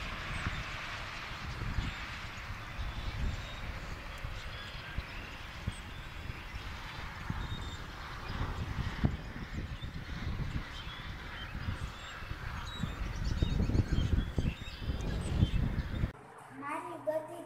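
Outdoor ambience: a low, uneven rumble that swells near the end, with faint bird chirps over it.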